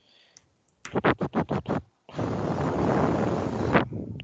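Scratching noise: a quick run of about eight short scrapes, then a loud, steady rough scratch lasting nearly two seconds that cuts off suddenly.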